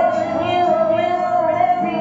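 Acoustic folk song: a woman's voice holds one long high sung note over acoustic guitar accompaniment.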